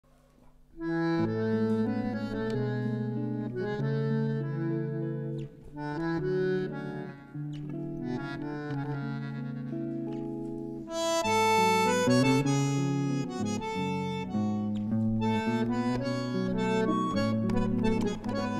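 Tango played on bandoneon and guitar: the bandoneon's held reedy chords lead over plucked guitar accompaniment. The music starts about a second in and grows louder around eleven seconds.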